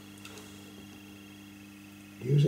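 Quiet room tone with a steady low electrical hum and one faint tick about a quarter second in.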